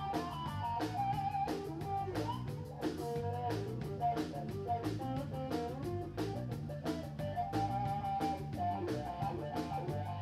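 Live blues-rock band playing an instrumental passage: an electric guitar lead with bent, sliding notes over bass guitar and a steady drum-kit beat.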